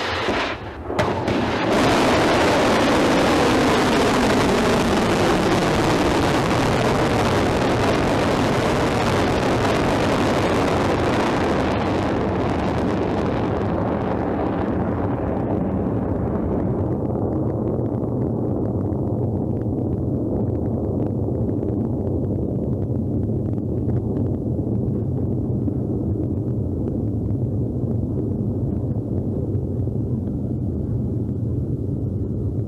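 Pukguksong-2 solid-fuel ballistic missile launching: the rocket motor's roar starts abruptly and runs loud and full, with a falling pitch in the first seconds. After about twelve seconds it loses its hiss and settles into a steady low rumble as the missile climbs away.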